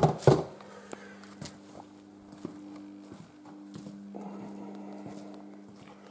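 A steady low electrical hum in a small garage, with a few faint scattered clicks and steps on the concrete floor. A soft hiss joins about four seconds in.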